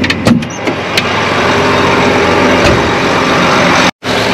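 A few sharp clicks from the tractor cab door's latch and handle as it opens, then a loud steady noise of the John Deere 8310 RT tractor's diesel engine idling, heard with the cab open.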